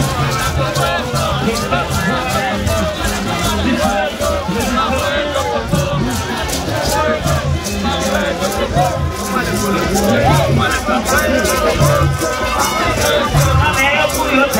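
Haitian rara band playing live in a packed crowd: a steady rattling beat with low pulses under it and many voices singing and shouting along.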